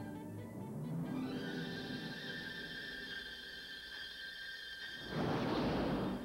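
Film score at a movie's opening titles: a sustained high chord of several steady tones, then a loud rushing burst of noise lasting about a second near the end.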